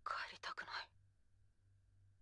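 A short whispered phrase of speech lasting under a second, followed by a faint steady hum.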